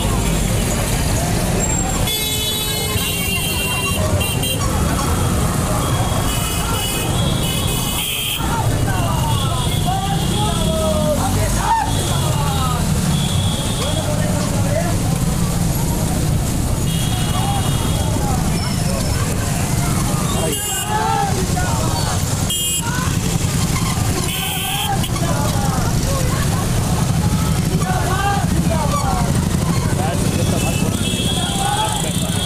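Many motorcycle engines running together in a slow procession, with horns beeping in short blasts several times. People's voices call out over the engines.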